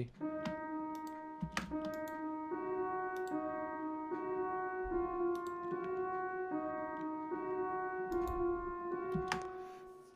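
Omnisphere synth patch in FL Studio playing a simple sustained melody of held notes in D sharp minor. The notes change about every second and overlap slightly, with a few short clicks among them.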